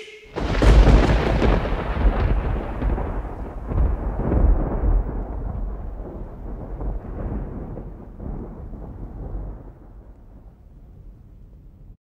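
A long roll of thunder that begins just after the last word, swells about a second in and again around four seconds, then fades away slowly.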